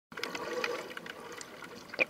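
Water close to the surface, heard from below: a quiet trickling, bubbling wash with many small scattered clicks and ticks.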